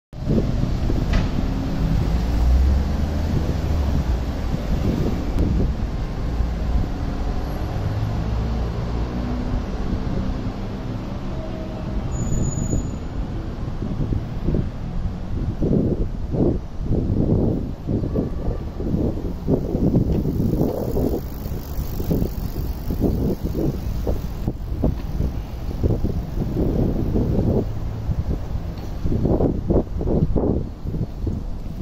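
Road traffic on a city street, a steady low rumble of passing cars. From about halfway on there are irregular low thumps.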